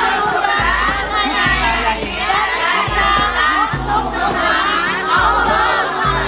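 A group of women shouting a cheer together, many voices at once, over background music with a recurring low bass beat.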